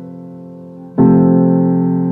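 Background piano music: a held chord fades slowly, then a new chord is struck about a second in and rings on.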